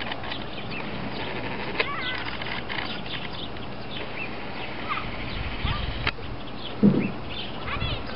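Outdoor ambience: a steady background hiss with scattered short, high bird chirps throughout. A brief louder low sound near the seventh second is the loudest moment.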